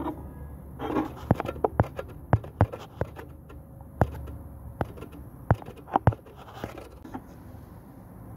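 Irregular sharp clicks and light taps, about a dozen in all, with faint scraping, as a hand holds and shifts against a resin bust and its head.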